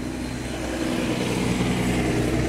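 Datsun 1200 pickup engine idling steadily through its custom exhaust of 2-inch piping from the header to a 2.5-inch muffler with a large polished tip, growing a little louder.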